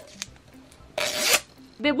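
Tear strip of a Disney Princess Comics mini-figure blind canister ripped off in one quick rasp, about a second in, as the package is opened.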